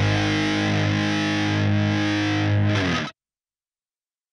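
Rock music ending on a held, distorted electric guitar chord that cuts off abruptly about three seconds in.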